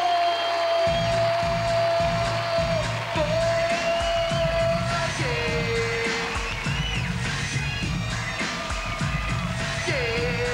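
Live hip-hop music: a man's long held sung note over a microphone, joined about a second in by a heavy bass beat. About halfway through, the held note drops to a lower pitch and carries on.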